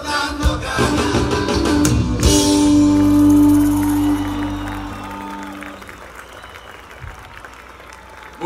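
Live rock band finishing a song: a final held chord rings out and fades over a few seconds. The crowd applauds and cheers as it dies away.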